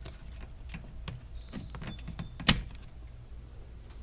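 Plastic push clip being pried out of a 2018 Dodge Charger's cowl panel: scattered small clicks, scrapes and short plastic squeaks, then one sharp loud snap about two and a half seconds in as the clip lets go.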